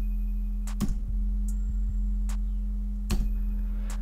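Film trailer score: a steady low drone with sharp ticking hits about every three quarters of a second.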